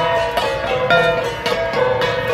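Gangsa, Cordillera flat bronze gongs, beaten with sticks by several players together: overlapping metallic ringing at several pitches, struck in a quick steady rhythm.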